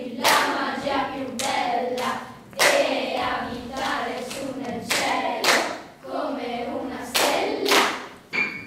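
Children's choir singing, punctuated by sharp handclaps from the singers every second or so, sometimes two in quick succession.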